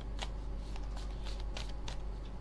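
Tarot deck shuffled by hand: a run of light, irregular card clicks over a steady low hum.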